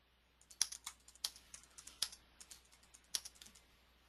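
Typing on a computer keyboard: a faint, irregular run of sharp key clicks.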